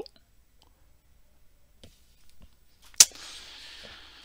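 Near silence with a few faint ticks, then one sharp click about three seconds in, followed by a low steady hiss.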